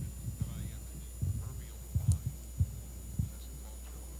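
A series of short, low thumps and bumps, about six in four seconds, over a steady low hum, with a faint murmur of voices in the hall.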